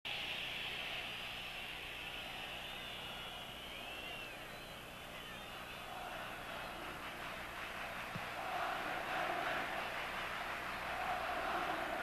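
Football stadium crowd noise from the broadcast sound, a steady mass of crowd sound that swells a little in the second half.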